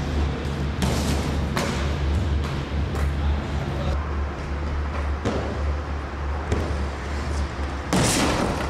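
Aggressive inline skating heard on an on-board camcorder mic: a handful of sharp knocks from skates landing and striking rails and wooden ramps over a steady low rumble.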